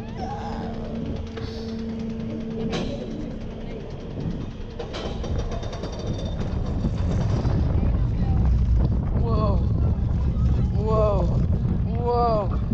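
Python steel roller coaster train crossing the top of its lift hill with a steady hum, then a growing rumble of wheels on track and wind as it gathers speed down the first drop. Riders whoop a few times near the end.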